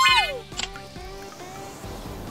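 Cartoon background music with a soft, steady whoosh of blowing air from giant drying fans coming in about a second in; a voice trails off with a falling pitch at the very start.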